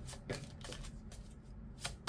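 A deck of oracle cards being shuffled by hand: about four short, soft card snaps spread across the two seconds.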